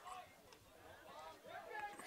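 Faint, distant voices over a very quiet outdoor background.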